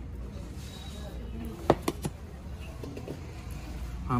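Two sharp clinks of a steel spoon against steel dishware, about two seconds in and a fraction of a second apart, over a low steady hum.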